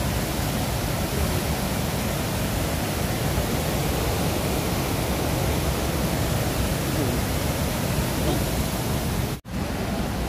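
The Bagmati River in full flood: a loud, steady rush of fast, churning muddy water heard from a bridge. The sound breaks off for an instant near the end.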